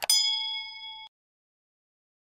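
A single bright, bell-like metallic ding, preceded by a short click. It rings on several steady tones for about a second, then cuts off abruptly.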